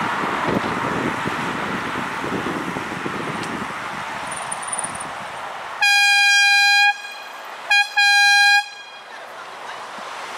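Wind and road rush from a bicycle ridden at speed, easing off as it slows. Then a loud horn on one steady pitch: a blast of about a second, a very short toot, and a second blast of under a second.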